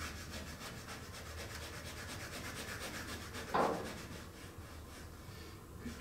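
Coloured pencil scratching across toned drawing paper in quick, even hatching strokes as shading is laid in. About three and a half seconds in there is one short, louder rustle, and the scratching is fainter after it.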